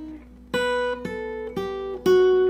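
Steel-string acoustic guitar played fingerstyle: three plucked notes about half a second apart, stepping down in pitch and ringing on over a sustained lower note.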